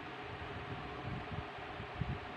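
Steady background noise with a faint hum, with no distinct events: room tone.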